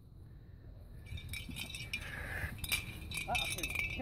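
Light metallic jingling and clinking, starting about a second in and continuing in quick shakes, like small metal pieces jostled by running.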